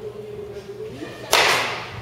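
A baseball bat hitting a ball once, a sudden loud crack a little past a second in that dies away within about half a second.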